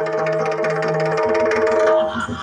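Yakshagana stage music: a steady shruti drone with busy drumming from the percussionists, with no singing.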